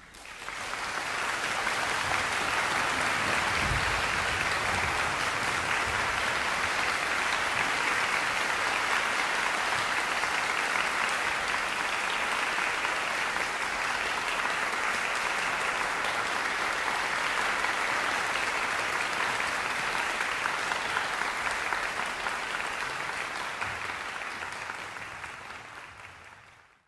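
Concert audience applauding. It breaks out suddenly, holds steady, and tapers off near the end.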